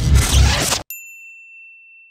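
Logo sting: a loud, dense burst of music cuts off abruptly a little under a second in, leaving a single high bell-like ding that rings on and slowly fades.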